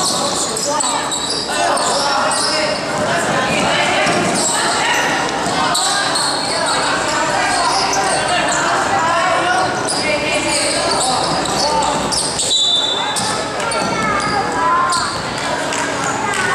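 Players and spectators shouting and calling out during a basketball game, their voices echoing in a large hall, with a basketball being dribbled on the court.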